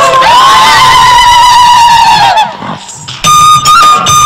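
A group of people crying out together in fright, one long held cry that falls away after about two and a half seconds. After a short lull, background music comes in on a high held note.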